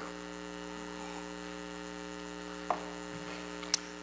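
Steady electrical mains hum from the microphone and sound system, with a faint knock late on and a brief sharp click just before the end.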